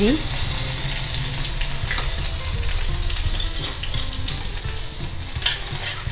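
Chopped green chilli and ginger sizzling steadily in hot oil in a stainless steel kadai, stirred with a metal spatula that clicks against the pan a few times.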